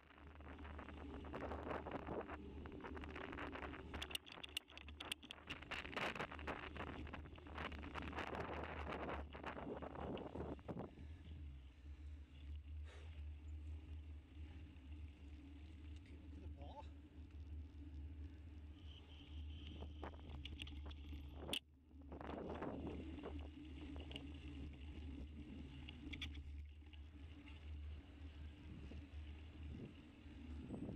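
Bicycle-mounted camera on the move: a steady low wind rumble on the microphone with rattling and clatter from the bike rolling over paving, heaviest for the first ten seconds and again a little after twenty seconds. A single sharp click comes about two-thirds of the way through.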